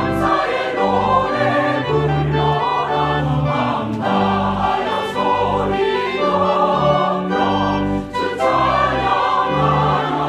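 Mixed church choir singing a sacred anthem in full voice, over long held low accompanying notes, with a brief break between phrases about eight seconds in.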